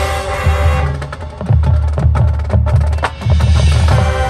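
Marching band playing a field show: a held chord at the start gives way, about a second in, to a percussion passage of rapid sharp clicking strokes over bass drum hits. The full band swells back in near the end.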